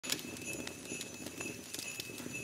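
Intro sound effect under an animated title: a crackling hiss with irregular sharp clicks and a faint steady high tone.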